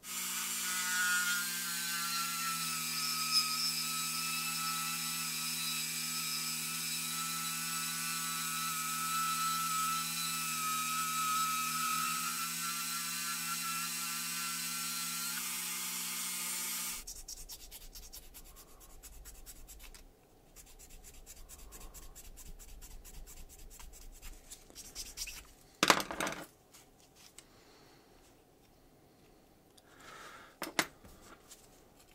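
Handheld rotary tool with a small diamond burr running at a steady speed, grinding away the hardened putty firewall of a 1:64 diecast car body. The motor's whine and grinding hiss cut off suddenly about 17 seconds in. After that come quieter rubbing and handling sounds of the small metal parts, with one sharp click near the end.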